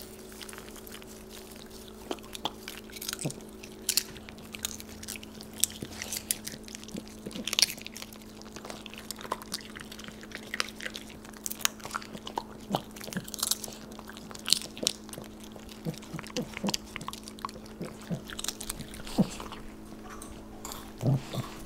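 Italian greyhounds crunching and chewing popcorn, close to the microphone: irregular crisp crunches and smacks of chewing, over a steady low hum.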